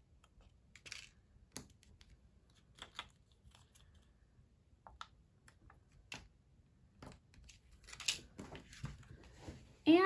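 Quiet, scattered small clicks and taps from fingers peeling self-adhesive epoxy dots off their plastic backing sheet and pressing them onto a paper card, with a louder handling scuff about eight seconds in.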